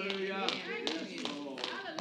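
Faint voices of the church congregation calling out responses, with a few short sharp taps among them.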